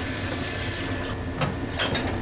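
Tap water running onto the aluminium lid of a pressure cooker in a steel sink, cooling it down before it is opened. The stream cuts off about a second in, followed by a few light metallic knocks.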